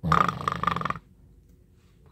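A man's voice making a mock snore for the printed 'Z-z-z-z' at the end of a page: one rasping, fluttering snore about a second long.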